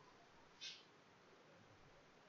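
Near silence: faint room tone, broken by one brief high-pitched chirp or squeak about half a second in.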